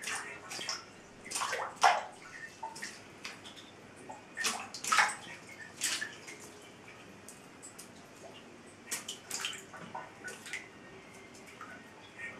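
Bathtub water splashing and dripping in short irregular bursts as a homemade bent PVC lure is drawn through it on a line.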